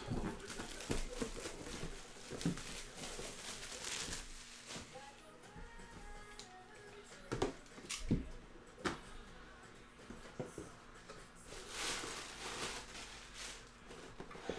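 Plastic shrink wrap crinkling and rustling as it is torn off a cardboard box, with a few sharp knocks from handling the box around the middle. Faint background music underneath.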